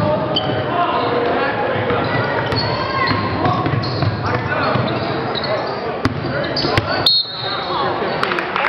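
Basketball game in a gym: a basketball bouncing on the hardwood floor, sneakers squeaking and crowd voices, echoing in the large hall. Sharp knocks come about six and seven seconds in, followed by a brief shrill tone.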